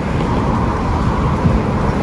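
Street traffic noise: cars running past with a steady low rumble.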